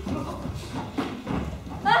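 Footsteps of an actor hurrying across a wooden stage floor: a handful of hollow thuds, roughly two a second.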